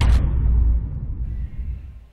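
Intro logo sound effect: a sudden deep hit followed by a low rumble that fades away over about a second and a half.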